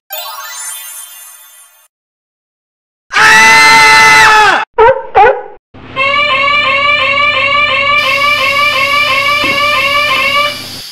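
Electronic sound effects: a shimmering sound fades out, and after a second of silence a loud held tone sounds, then two short blips. A repeating warbling tone like an alarm follows, and a hiss joins it about eight seconds in.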